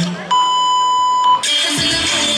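The dance music cuts out and a single steady electronic beep sounds for about a second, a sound effect edited into the routine's music mix, before the music comes back in with a heavy beat.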